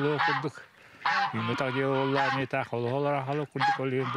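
Domestic geese honking, mixed with a man's voice talking.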